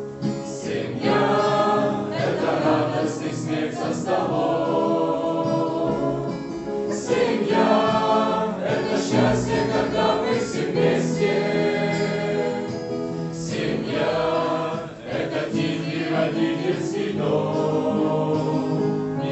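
Mixed choir of young men and women singing a Christian song together, accompanied by acoustic guitar.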